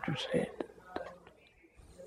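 Faint, quiet speech in a pause between loud spoken sentences, with a few small clicks in the first second and a brief lull in the middle.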